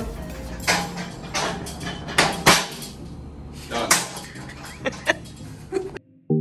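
Manual pallet jack rolling fast across a hard floor, its wheels rumbling, with a series of sharp knocks and clatters from the jack. The loudest knocks come about two and a half seconds in.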